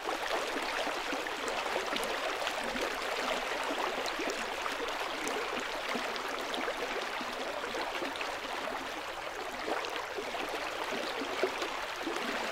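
A stream of running water, steady throughout.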